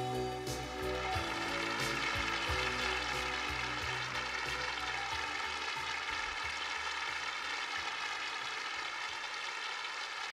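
Audience applauding at the end of a song, over the last notes of the backing music, which die away about five seconds in; the applause then continues steadily on its own.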